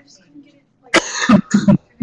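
A person coughs twice, starting about a second in, with the second cough shorter than the first.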